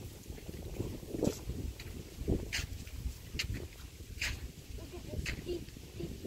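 Footsteps on a wooden footbridge's boards: a handful of separate sharp steps, roughly one a second.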